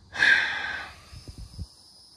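A short, loud breath close to the microphone, followed by a few soft low thumps.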